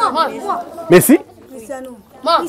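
A group of children calling out over one another, clamouring to be picked, with one short, loud shout about halfway through.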